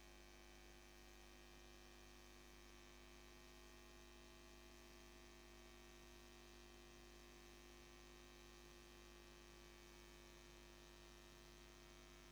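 Near silence: a steady, faint electrical hum in the room tone.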